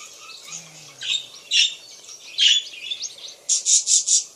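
Budgerigars chirping and warbling, with loud sharp chirps about a second, a second and a half and two and a half seconds in, and a quick run of about four chirps near the end.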